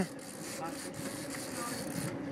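Charter fishing boat's engine running steadily at trolling speed, a low even hum with water noise around it.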